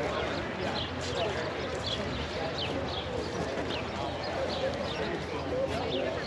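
Indistinct chatter of people talking in the background, with footsteps on gritty pavement at about two steps a second.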